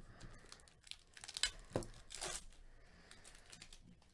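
Foil wrapper of a baseball card pack being torn open and crinkled, a few short rips about a second to two and a half seconds in, then faint rustling.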